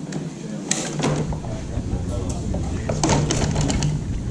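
Indistinct voices of people talking in the background, with several short sharp clicks or knocks, a few of them bunched together near the end.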